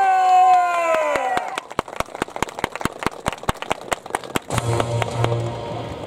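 A performer's voice drawing out the last syllable of a formal spoken greeting, falling in pitch, followed by a quick, even run of sharp clicks for about three seconds. A music track with a low bass comes in near the end.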